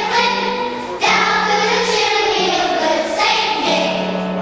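Children's choir singing, with long held notes.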